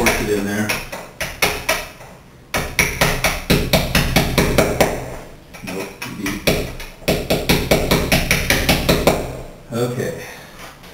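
Hammer striking a chisel into the mortar joint around a glass block in quick light taps, about five a second. The taps come in three runs with short pauses between them.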